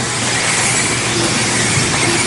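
Electric 1/10-scale 2WD RC buggies racing on an indoor track: a steady noise of motors and tyres, with a few faint high tones over it.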